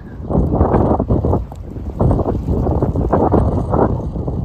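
Wind blowing across a phone microphone outdoors: loud, gusty buffeting noise that rises and falls without letting up.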